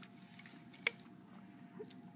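A rubber loom band being stretched onto the plastic pins of a Rainbow Loom: one sharp click a little under a second in and a fainter tick near the end.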